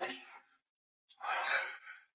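A person's breathy sigh, a single exhale about a second in, after a laugh trails off at the start.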